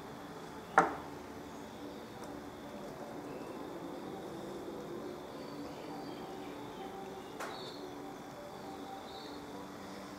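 Quiet background ambience with faint steady tones, broken by one sharp click about a second in and a fainter click near the end.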